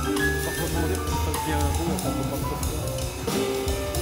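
Live jazz trio playing free jazz: piano, upright double bass and drum kit together, with a moving bass line, changing piano notes and cymbal strokes.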